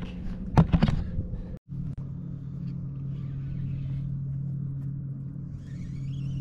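A boat motor running with a steady low hum. It is preceded in the first second and a half by a few sharp knocks and handling noise.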